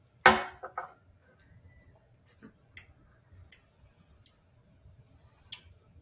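Sounds of a person tasting whiskey at a counter: one short loud noise about a quarter second in, a smaller one just after, then a few faint clicks spaced roughly a second apart.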